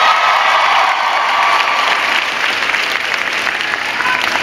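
Large crowd applauding, dense clapping that eases off slightly near the end.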